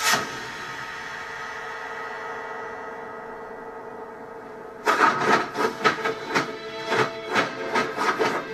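Martial-arts film soundtrack playing from a TV: a sustained ringing chord in the score starts suddenly, and about five seconds in a quick run of sharp punch and block hit effects begins, about four a second, over the music.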